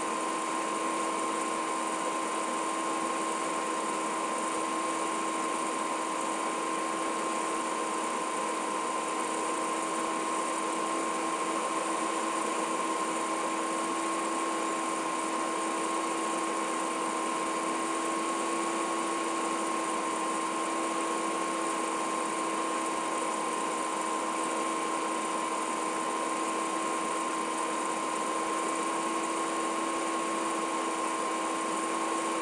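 A steady hiss under a constant mid-pitched hum, unchanging throughout.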